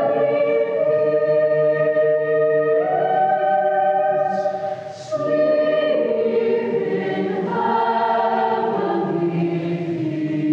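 Mixed youth chamber choir singing long held chords that shift every few seconds, with a short break and a brief hiss about halfway through.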